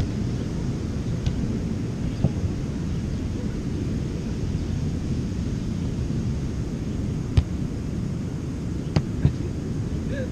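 Steady low rumble of wind on the microphone and ocean surf, with a few sharp thumps of a volleyball being hit, two of them close together near the end.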